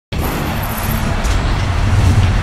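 Loud rumbling whoosh of a broadcast title-graphic intro, heavy in the bass, over intro music. It starts abruptly just after the opening moment.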